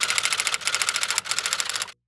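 Typewriter keystroke sound effect: a fast, even run of key clicks, about fifteen a second, cutting off suddenly just before the end.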